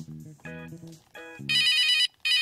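Soft plucked-note music, then about one and a half seconds in a phone starts ringing: a loud, fast electronic trill that sounds in bursts.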